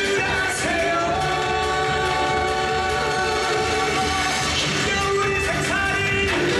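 Women singing together into microphones over band accompaniment, holding one long note from about a second in to past the middle.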